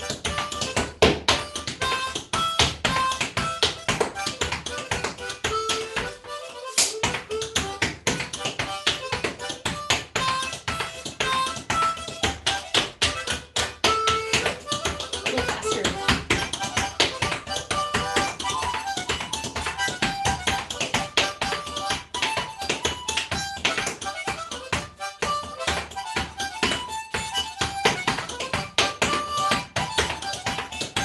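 Freestyle flatfoot clogging: a rapid, continuous patter of foot taps and stamps, with a harmonica playing a tune over it.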